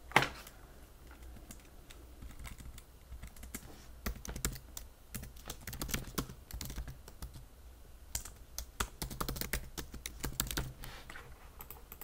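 Typing on a computer keyboard: irregular runs of key clicks with short pauses between them, with one louder click right at the start.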